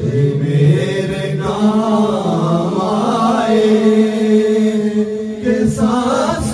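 Men's voices singing a naat in a chanting style. After a short moving phrase, one long low note is held for about four seconds, and a new phrase begins near the end.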